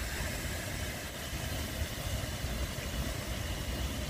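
Steady outdoor background noise: a low rumble under an even hiss, with no distinct events.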